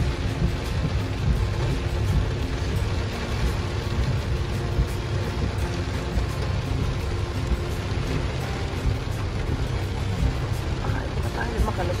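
Heavy rain on a car's windshield and roof heard from inside the cabin, over the steady low rumble of the car in traffic.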